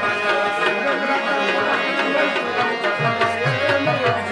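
Live folk music: a hand drum beaten in a steady rhythm under sustained melodic tones, with the low drum strokes growing more prominent in the second half.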